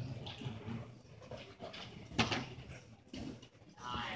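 Faint scuffling of two grapplers working on a wrestling mat, with one sharp smack about halfway through.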